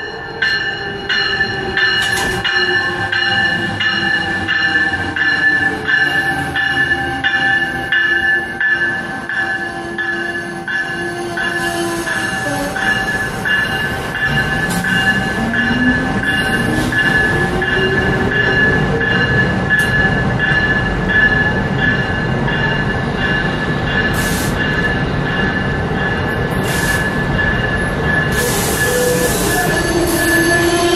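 Amtrak passenger train pulling into the station and slowing to a stop, its wheels squealing steadily and high under braking as the coaches roll past. A rising whine comes in about halfway through, and short hisses near the end.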